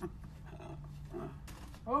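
A person's voice: a loud exclamation, "Oh!", near the end that falls in pitch, after a few quieter vocal sounds over a low steady hum.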